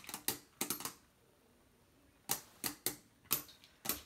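Beyblade Burst spinning tops clacking against each other and the walls of a plastic stadium: a few sharp clicks in the first second, then a quiet spell, then about five more clicks in the last two seconds.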